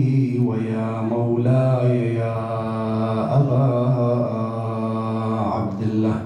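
A man chanting a salutation to Imam Husayn in long, drawn-out melodic phrases, his voice held on sustained notes with a couple of short breaths between them.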